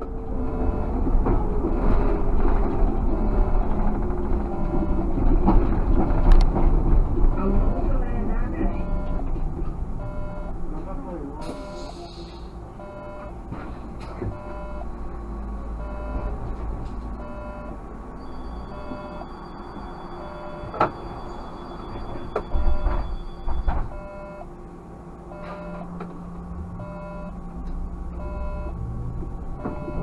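Running noise in the cab of a Škoda 30Tr SOR trolleybus on the move: a whine from its electric drive falls in pitch over the first few seconds as it slows, over a steady road rumble, with a few sharp clicks.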